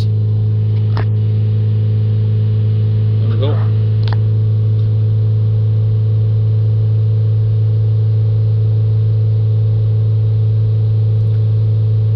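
Ford Transit diesel engine held at a steady fast idle of about 3000 rpm, a loud constant drone, while cleaning fluid is flushed through its blocked diesel particulate filter. A couple of faint clicks sound over it about one and four seconds in.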